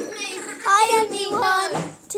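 A young girl singing a short phrase in a high voice.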